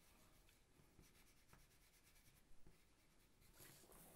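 Faint rubbing of white oil pastel on paper as it is layered over gray to blend it, with a brief, slightly louder paper rustle near the end as the sheet is turned.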